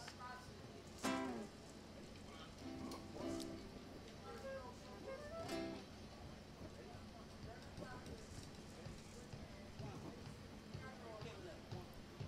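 A quiet pause on stage: a few soft, scattered acoustic guitar plucks and brief faint voices, with no song playing yet.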